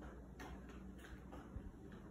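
Faint footsteps on a tile floor, soft taps about every half second, over a low steady room hum.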